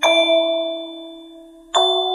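Slow lullaby played on a bell-like instrument: a soft chord struck at the start rings and slowly fades, and a second chord is struck near the end.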